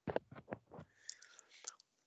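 Faint, breathy voice sounds in short broken bursts over a video call, likely soft laughter and murmurs, ending abruptly near the end.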